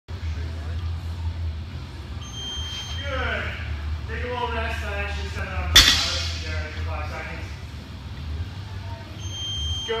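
Loaded barbell set down on the gym floor with one sharp clank a little before halfway, over a steady low hum and indistinct voice.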